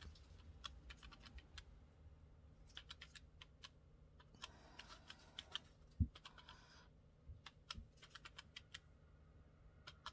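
Faint clicking of a desk calculator's plastic keys being pressed in short quick runs as figures are entered, with one soft thump about six seconds in.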